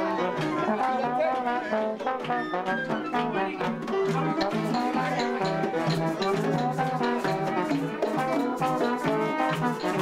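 Live plena music: a trombone plays over panderetas, the plena hand frame drums, beaten in a steady driving rhythm.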